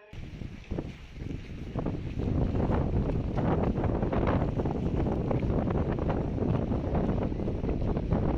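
Strong wind buffeting the microphone: a loud, low, irregular rush that starts abruptly, builds over the first two seconds and then holds steady.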